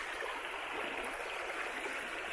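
A shallow stream flowing over a gravel bed, a steady, even rush of water.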